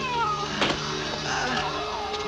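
Film score with sustained low notes, over which a man gives a pained cry that falls in pitch, with a single sharp hit about two-thirds of a second in.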